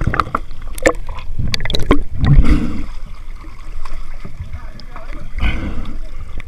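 Seawater sloshing and splashing around a camera held at the surface beside a dive boat's hull, with sharp clicks and knocks. A heavier, muffled gurgling surge comes about two seconds in and again shortly before the end.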